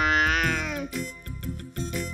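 A cartoon cat's drawn-out yowl, one loud call of about a second that sags in pitch as it ends, followed by background music with a steady beat.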